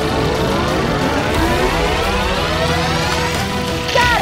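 Sci-fi time-machine power-up sound effect: many tones sweep upward together for about three and a half seconds over a low rumble. A hit lands right at the end.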